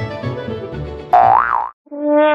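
Background music, then a little over a second in a loud cartoon 'boing' sound effect whose pitch swoops up and back down before cutting off.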